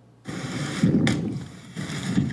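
Roadside noise on a police body camera's microphone: wind buffeting the mic over a low rumble, cutting in about a quarter second in, with a sharp click about a second in.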